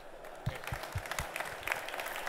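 Audience applauding, the clapping starting about half a second in.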